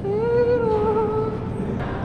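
A person humming a tune to themselves: one long, slightly wavering note held for about a second and a half, then broken off.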